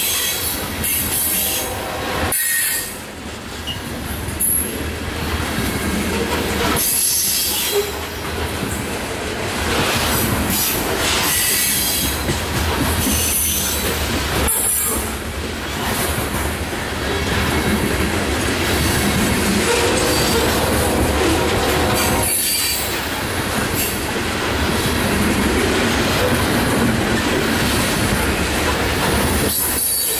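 Loaded coal hopper cars of a freight train rolling past close by: steel wheels running on the rails in a loud, continuous noise, with a few brief dips in level.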